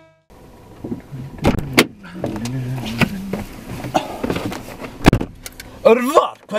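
A car door being opened with a couple of latch clicks, a person climbing onto the seat with rustling and shuffling, and the door shutting with a heavy thud near the end.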